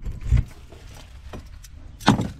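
Handling noise: one soft low thump about a third of a second in, then a few faint clicks and light rustling over low background noise.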